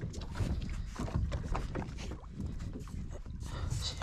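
Water lapping against a small boat's hull, with wind on the microphone and scattered light knocks and clicks.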